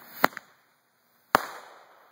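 Roman candle set firing at night: two sharp reports about a second apart. The first is followed by a smaller pop.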